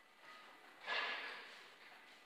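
A dairy cow blowing out a sharp snort: a sudden hiss of breath about a second in that fades away within a second.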